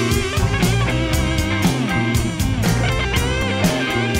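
Instrumental intro of a rock-blues band: electric guitar over drum kit and bass, with a steady beat and bending guitar notes.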